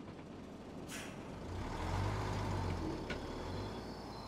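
Truck engine rumbling as it drives off, swelling about a second and a half in, with a short hiss of air about a second in.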